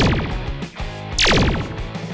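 Cartoon laser-blaster sound effect for a toy robot's cannon: two falling zaps about a second and a quarter apart, over background music.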